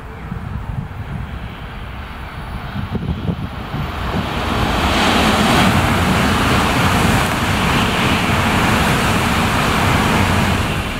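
N700 series Shinkansen train approaching and passing at speed. A rushing noise builds over the first few seconds, turns loud about five seconds in, and holds steady as the cars go by.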